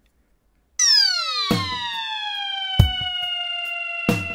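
Electronic music sting: about three-quarters of a second in, a bright synthesized tone starts and glides down in pitch, levelling off into a held note, with two drum hits along the way.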